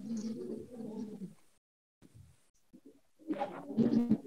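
A dove cooing faintly in the background: one long, low call that stops about a second and a half in.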